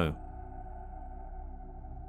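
Background ambient music: a low, steady drone with faint held tones.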